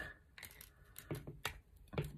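Several faint, short clicks and taps from pliers squeezing the hinged section of a plastic Clipsal quick-connect surface socket; a click is the sign that the hinged section is gripping the conductors.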